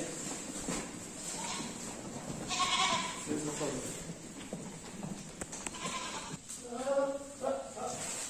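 Goats bleating several times, short wavering calls about two and a half seconds in, again a second later, and near the end.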